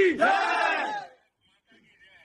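A group of men shouting together in a loud cheer, which stops about a second in.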